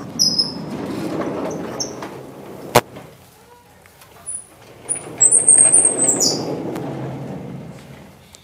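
Chalkboard being handled: an eraser rubs across the board and a sliding board panel is moved, with high squeaks over the top. The noise comes in two stretches, the second falling away near the end, with one sharp knock just before three seconds in.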